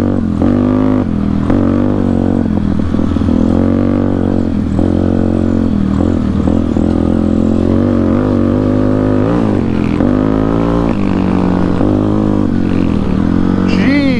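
Yamaha Warrior 350 ATV's single-cylinder four-stroke engine, breathing through a custom Rossier exhaust, running under load. Its pitch rises and falls again and again as the throttle is opened and eased.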